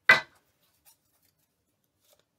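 A deck of tarot cards being shuffled: one short, sharp flutter of cards at the start, then a faint tick about a second in.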